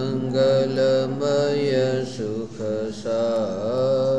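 A mantra chanted by one voice in slow, held notes that glide from one pitch to the next, over a steady low drone.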